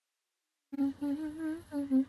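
A woman's closed-mouth laugh, a hummed "hm-hm" that starts abruptly just under a second in, its pitch wavering up and down.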